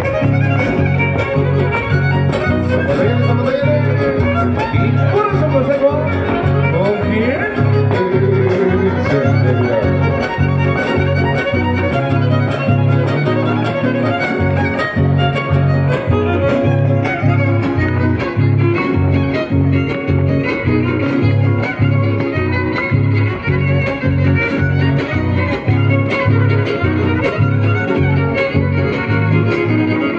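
A live band playing dance music led by violin, with guitar and a steady, regular bass beat throughout.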